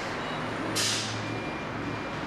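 Steady room noise with one short, sharp hiss about three-quarters of a second in.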